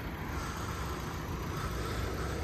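Steady low outdoor rumble with no distinct event in it.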